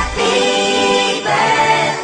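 Background music: a song's passage of several voices singing held notes in harmony, with the bass and beat dropped out and the chord changing about a second in.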